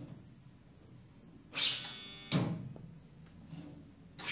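Improvised music on the inside of an upright piano and live electronics: two sudden, ringing sounds about three-quarters of a second apart, the first high-pitched and the second lower, each dying away.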